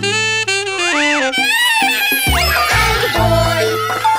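A saxophone playing wild, loud notes over a bouncy children's song backing track. One note slides up and back down about a second in, and another sweeps sharply upward about two and a half seconds in.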